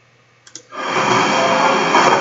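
Two mouse clicks about half a second in, then the preview of a trampoline-park video clip starts playing its own recorded sound: a loud, even wash of indoor noise.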